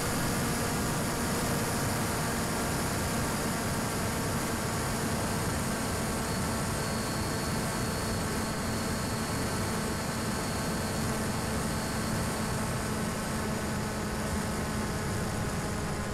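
Steady hiss over an even, unchanging hum: an RC plane's electric motor and propeller held at constant cruise throttle, heard through the onboard FPV audio.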